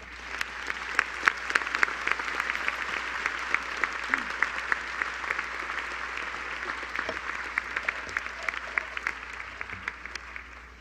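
Large auditorium audience applauding. Dense clapping builds quickly at the start, holds steady, then thins out near the end.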